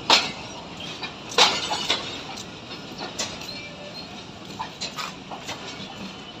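Passenger train at a station platform: sharp metallic clanks and clicks at irregular intervals over a steady background noise, the loudest two near the start and about a second and a half in.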